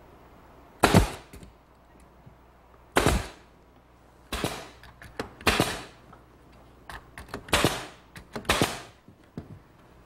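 Pneumatic brad nailer firing one-and-a-half-inch brads into redwood, about six shots a second or two apart, each a sharp crack with a short hiss of exhaust air, with a few lighter knocks of wood being positioned between them.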